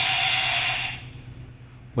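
Compressed air hissing out of the open purge (bypass) valve on a supplied-air respirator's regulator. The steady rush fades away about a second in and shows that air is flowing through the system from the carry-on bottle.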